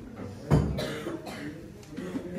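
A single cough about half a second in, with people talking in the room around it.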